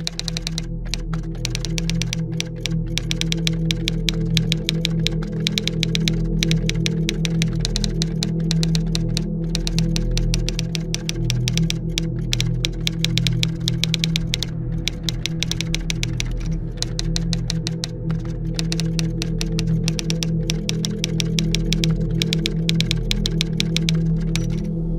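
Rapid key-clicks of a typing sound effect, running in quick runs with a few short pauses, over sustained low background music.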